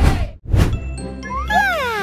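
Editing sound effects for a scene transition over background music: a short whoosh about half a second in, then a bright chime-like tone that slides downward in pitch from about a second and a half in.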